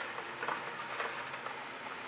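Silicone spatula spreading wet black acrylic paint across a stretched canvas: quiet smearing and scraping with a few faint soft ticks.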